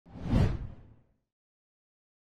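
A single whoosh sound effect for an animated title card, swelling quickly and fading out about a second in.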